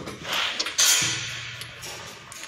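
Metal parts of a chain link fence machine knocking and scraping as the machine is handled, with a sharp clank a little under a second in, followed by a short low drone.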